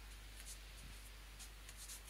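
Faint, soft scratching and rubbing of a cat's claws and paw on a terry towel: several short scratchy strokes, coming closer together near the end, over a faint steady low hum.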